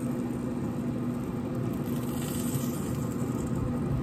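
Pit Boss Austin XL pellet grill running with a steady, even hum from its fan.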